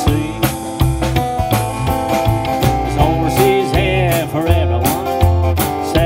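Live country band playing: strummed acoustic guitar over an upright bass line, with a drum kit keeping a steady beat.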